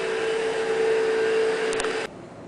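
A steady machine-like hum holding one pitch over a hiss, with two faint ticks near the end, cutting off suddenly.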